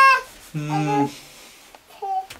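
A child's high-pitched voice trailing off, then a man's short, low, wordless hum of about half a second. A faint click or two follows near the end.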